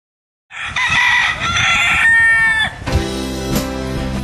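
A rooster crows once, a call about two seconds long whose last note falls away. Then guitar music begins, about three seconds in.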